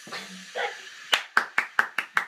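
Hands clapping: a quick, even run of sharp claps, about five a second, starting about a second in.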